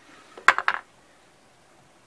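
A quick cluster of small clicks and knocks about half a second in, as the blender's lid is pulled off its jar.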